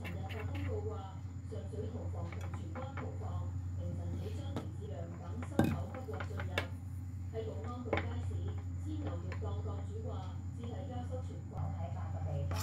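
Metal spoon stirring and scraping a flour-and-water mixture in a ceramic bowl as it is worked into a dough, with soft scrapes and a few sharper clinks against the bowl around the middle, over a steady low hum.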